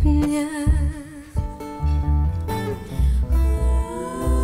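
Live looped music: a woman's wordless singing with a wavering vibrato over a repeating deep bass beat and guitar.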